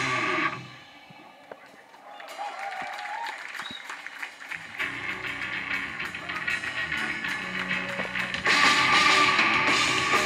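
Live metal band with drums and distorted electric guitars stops abruptly about half a second in. A few seconds of low sound follow, low sustained tones return around five seconds, and the full band comes back in loudly around eight and a half seconds.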